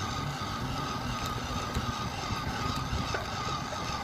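200-watt friction-drive electric bicycle motor running under load on an uphill climb, its roller driving the tyre: a steady whine over a low rumble.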